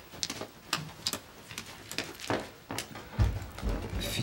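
Scattered light clicks and taps of tableware at a dining table set with plates and glasses, with a low thump a little after three seconds in.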